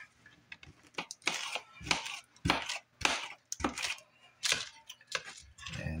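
Sharp kitchen knife slicing through peeled pineapple flesh onto a cookie sheet: about eight short, crisp cutting strokes, roughly one every half second to second.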